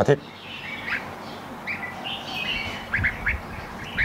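Red-whiskered bulbuls chirping: short, high chirps scattered through, with a quick run of three about three seconds in and a few soft low bumps beneath.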